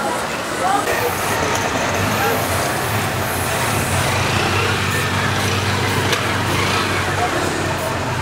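Street traffic: a motor vehicle's engine hum that settles into a steady low drone from about halfway through, with voices talking indistinctly in the first second.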